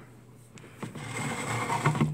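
Rapid scrabbling and rattling inside a wire-bar chinchilla cage, starting with a click about half a second in and growing louder toward the end.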